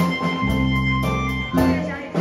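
A live band playing an instrumental passage: sustained keyboard chords over a moving bass line, with a drummer keeping a steady beat on cymbals.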